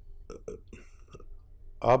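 A pause in a man's talk, holding only a few faint short clicks and rustles close to the microphone, before his speech starts again near the end.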